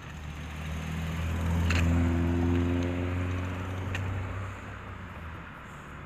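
A motor vehicle's engine passing close by, its hum growing to its loudest about two seconds in and then fading away, the pitch dropping slightly as it goes.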